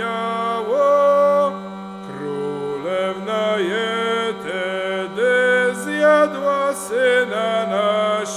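Hurdy-gurdy (lira korbowa) playing an instrumental melody that steps quickly from note to note over a steady, unchanging drone.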